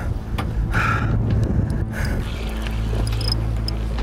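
A boat engine runs with a steady low hum, while wind buffets the microphone. A few faint short ticks come near the end.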